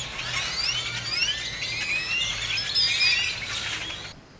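A flock of birds chirping and calling all at once, a dense chorus of many overlapping high chirps, over a faint low hum.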